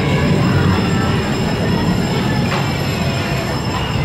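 Ride cars rumbling along the track through an indoor roller coaster's loading station, a steady loud rolling rumble.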